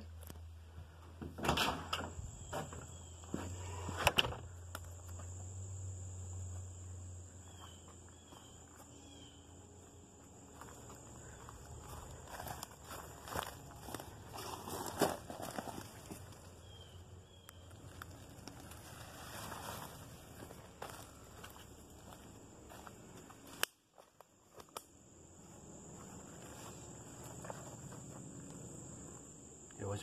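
Irregular footsteps of someone walking, with a few louder knocks early on.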